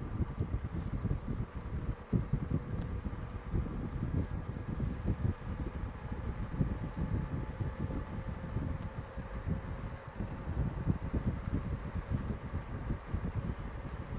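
Wind buffeting the microphone on a Honda Gold Wing at road speed, with a faint steady hum from the bike's six-cylinder engine underneath.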